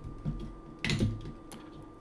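Plastic LEGO Technic parts clicking as a beam is pried off the transmission frame's connector pins: a pair of sharp clicks about a second in and a lighter one near the end.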